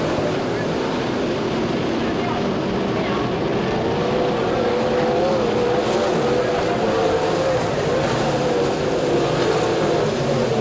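A field of winged sprintcars racing on a dirt oval, their V8 engines running hard together in a loud, continuous drone. The pitch wavers up and down as the cars go on and off the throttle through the turns.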